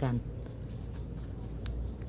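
Folded lottery-ticket paper being pressed and creased between the fingers: light rustling and scratching, with a few small crisp ticks in the second half.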